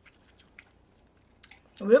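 Faint chewing with a few soft mouth clicks, then a woman's voice starts near the end.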